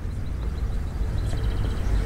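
Outdoor ambience on a riverside walk: a steady low rumble with a faint hiss above it. Faint, rapid high chirps come in during the second half.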